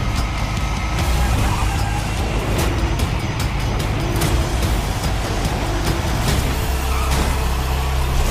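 Movie-trailer soundtrack: music over a steady heavy low rumble, with several sharp hits scattered through.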